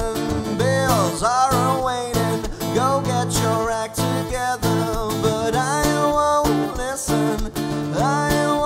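Acoustic guitar strummed in a steady rhythm, with a male voice singing a held, gliding melody over it.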